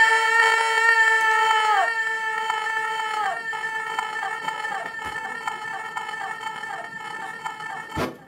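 A held, bright electronic drone from an electric guitar rig with a sample pad built into its body. Its upper notes dip in pitch twice in the first few seconds, then wobble in a quick repeating flutter while a steady lower note holds. The drone slowly gets quieter and cuts off suddenly at the end.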